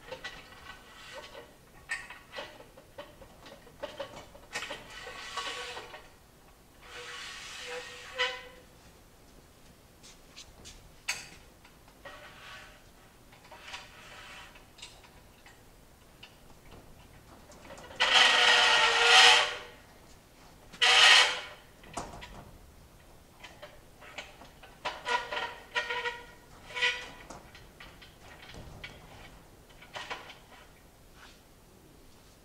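A 63-inch aluminum frame extrusion sliding into the CNC router table frame: metal scraping in several drawn-out strokes of a second or two, loudest twice just past the middle, with light knocks and clicks between.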